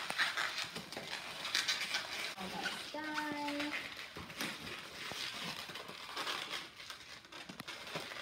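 Latex modelling balloons squeaking and rubbing as they are twisted by hand into balloon animals. There are scattered rubbery squeaks and crinkles, with one clear pitched squeak about three seconds in.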